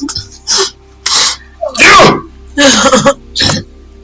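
A person's voice in about five short, loud outbursts, roughly one every half to three-quarters of a second, over a faint steady background drone.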